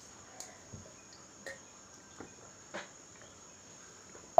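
A person drinking water from a glass: about five faint gulps and small clicks spread over a few seconds. A steady, thin high tone sits underneath.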